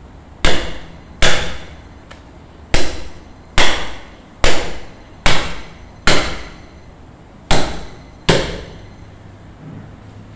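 A meat cleaver chopping through a rack of ribs into a wooden tree-trunk butcher's block: nine hard strikes, roughly a second apart, each a sharp chop with a short fading tail.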